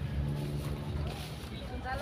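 A low, steady engine hum, with a brief faint voice near the end.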